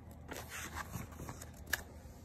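Paper pages of a picture book being turned by hand: a faint rustle of paper with a single crisp tick a little before the end.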